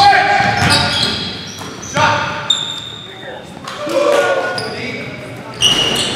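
Pickup basketball game on a hardwood gym floor: the ball bouncing, sneakers squeaking in short high notes, and players calling out, all echoing in the large hall.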